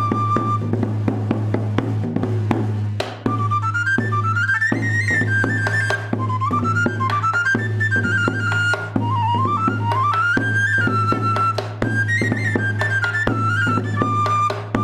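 Three-hole pipe and tabor played live by one musician: a shrill, quick-running pipe melody with rising and falling runs over regular strokes on the stick-beaten drum and a steady low hum. It is a Castilian jota.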